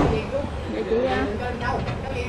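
Indistinct voices in the background over a low steady rumble.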